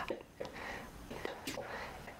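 A man whispering quietly, breathy and hissy, with no voiced pitch.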